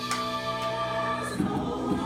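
Recorded gospel-style choir music playing, the voices holding one long chord for over a second before moving on to the next phrase.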